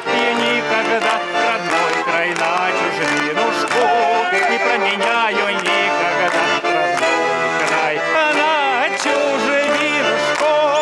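Russian garmon (button accordion) playing an instrumental folk melody with chords, with quickly changing notes.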